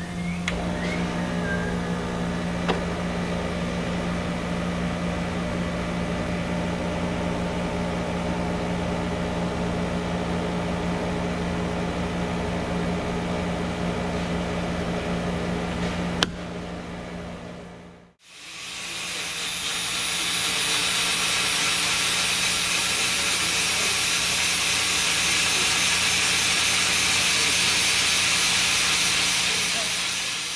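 A steady machine hum with a few sharp clicks as the controls of a welding machine are set. About 18 seconds in the sound cuts to a handheld angle grinder that builds up over a second or two and then runs with a loud, steady, hissy grinding noise against a steel pipe.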